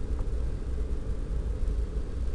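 Steady low rumble of background noise, with no other distinct sound.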